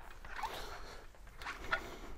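Chalkboard being wiped with a cloth or eraser: faint, irregular scratchy rubbing strokes with a few short squeaks.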